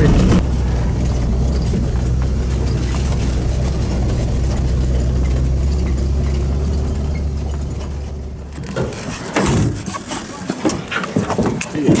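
Vehicle engine running steadily under way, a low drone heard from inside the cab, cut off after about eight seconds. A few short knocks and scuffs follow near the end.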